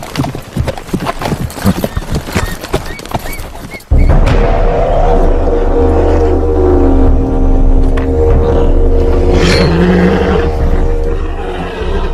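Horses' hooves clopping on a dirt path for about four seconds. Then a film score starts suddenly and loudly, with sustained tones over a deep low drone.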